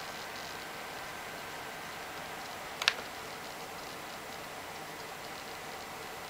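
Low steady hiss with a single sharp click about three seconds in, a netbook touchpad button being pressed.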